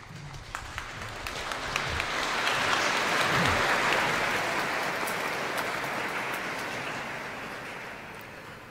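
Audience applauding. The clapping builds over the first few seconds, then slowly dies away.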